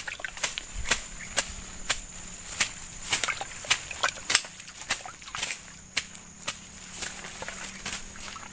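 A machete slashing through grass and weeds on a bank: a quick, irregular run of sharp cuts, about two a second.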